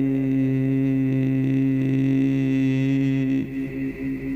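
A man's voice holding one long, steady chanted note of Arabic religious verse into a microphone. The note fades out about three and a half seconds in.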